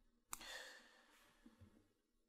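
A man's short, soft breath, opening with a small mouth click about a third of a second in; otherwise near silence.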